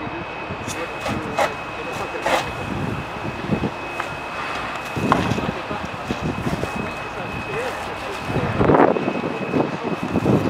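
Firefighting at a burning shed: a steady noisy rush under a constant high whine, with voices, a few sharp cracks and a louder burst of noise near the end.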